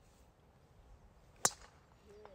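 A golf club striking the ball on a tee shot: one sharp crack about a second and a half in.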